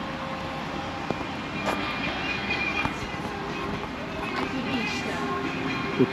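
Steady outdoor hum of vehicles and traffic around a gas station forecourt, with no single event standing out.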